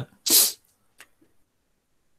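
A man's short, loud burst of breath, a sharp huff like a sneeze or snort, about a third of a second in, followed by a faint click about a second in.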